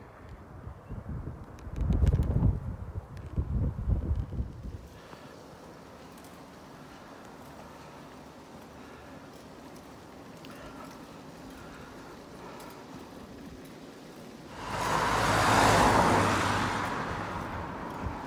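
A car passing close by, its noise swelling to a peak and fading over about three seconds near the end. Before it, low rumbling and knocks on the microphone for the first few seconds, then only a quiet steady background while riding.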